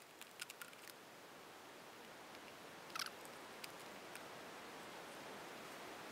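Faint clicks and light knocks from a windshield wiper blade being handled and turned over, with one slightly louder short scrape about halfway through.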